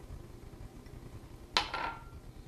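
A single sharp clink on a glass mixing bowl about one and a half seconds in, with a brief ringing tone. Otherwise only a faint low hum.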